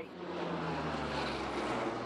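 Lockheed C-130H Hercules four-engine turboprop flying low overhead: a steady drone of engines and propellers over a broad rushing noise.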